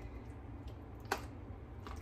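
A plastic spatula spreading soft cottage cheese in an aluminium foil pan, with one sharp click about a second in, over a low steady hum.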